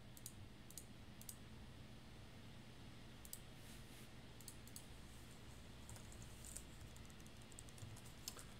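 Faint, scattered clicks of a computer mouse and keyboard, a few at a time with pauses between, over a steady low electrical hum.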